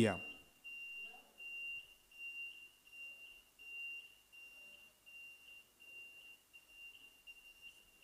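A faint, steady, high-pitched electronic tone that pulses slightly about twice a second, over quiet room noise.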